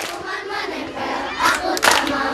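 A crowd of schoolchildren shouting together, with two sharp claps about one and a half seconds in.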